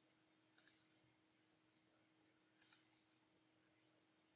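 Near silence with two faint double clicks of a computer mouse, about two seconds apart.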